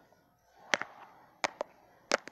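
A few short, sharp clicks and taps of handling noise, a small plastic toy figure and fingers knocking against the recording phone, over a quiet room.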